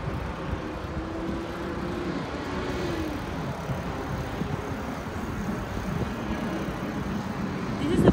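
Steady outdoor traffic noise from cars on the road and in the parking lot, with a vehicle's hum falling in pitch about three seconds in.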